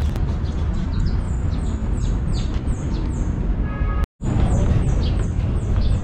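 A bird repeating short, high, falling chirps about three times a second over a steady low rumble. The sound drops out for an instant about four seconds in, and the chirping resumes after it.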